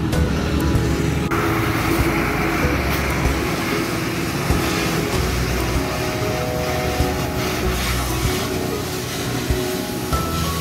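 Background music over a steady crackling hiss from electric arc welding on the tractor, which starts suddenly about a second in.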